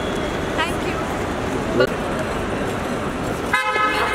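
Steady road-traffic noise with a few brief snatches of voices. A vehicle horn sounds as a held, steady tone near the end.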